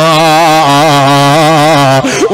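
A man's voice chanting, holding one long unbroken note with a slightly wavering pitch.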